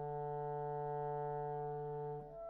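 Orchestral brass holding one sustained chord, steady and unchanging in pitch and loudness.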